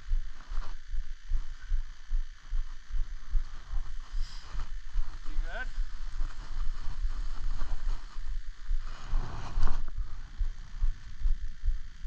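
Skis sliding and scraping over snow, with a low buffeting of wind on the microphone. There is a louder, longer scrape of snow about nine to ten seconds in.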